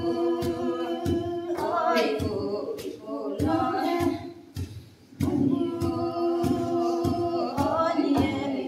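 Women singing a Sumi Naga folk song unaccompanied, in time with the thuds of two long wooden pestles pounding in a wooden mortar, about two strikes a second. The singing breaks off for about a second past the middle while the pounding goes on.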